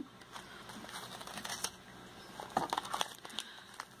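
Plastic food pouches crinkling and rustling softly as they are handled, with a few sharper crackles.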